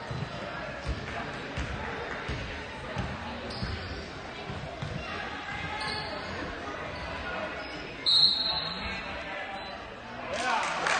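Basketball being dribbled on a hardwood gym floor, a bounce about every two-thirds of a second, over crowd chatter. About eight seconds in, a referee's whistle blows for about a second and stops play.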